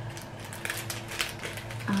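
A few faint, scattered clicks of long fingernails against a small metal locket pendant while prying at it to open it.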